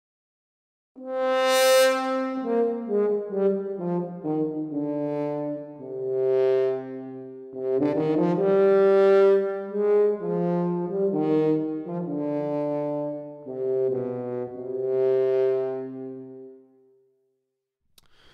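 Sample Modeling virtual French horns playing a slow legato passage in two parts, sequenced and played back from a DAW. It begins about a second in and ends on a long held note that fades out.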